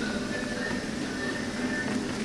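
Background music with sustained, steady notes.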